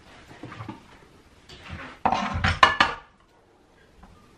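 Stainless steel mixing bowl being handled and set down on a digital kitchen scale: faint scraping, then a short clatter of metal knocks about two seconds in with a brief ring.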